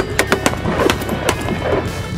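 Three X Products Can Cannons, blank-fired soda-can launchers on AR-15 rifles, firing almost together at the very start, followed by several more sharp shots. Background music runs underneath.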